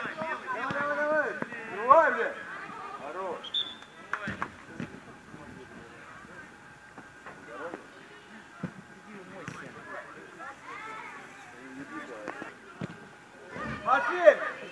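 Shouting voices during a youth football match: loud calls in the first three seconds, then quieter scattered shouts with a few short, sharp knocks.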